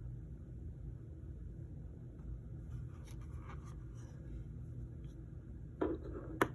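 Light clicks and scrapes of a silver coin being handled and lifted out of its case, over a faint steady low hum. A brief, louder sound comes just before the end.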